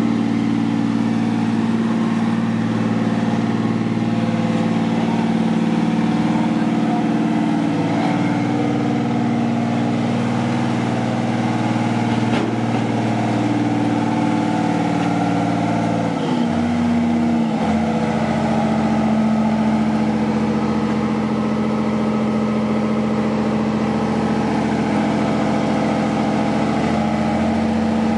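Diesel engine of an asphalt paver running steadily as it lays asphalt, its note dipping briefly a little past halfway.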